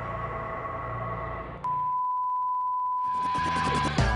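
Background music dies away, then a single steady electronic beep tone sounds for about two seconds. A funky music track with drums starts under the beep near the end.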